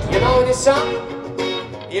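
Live music: a singer's voice over instrumental accompaniment.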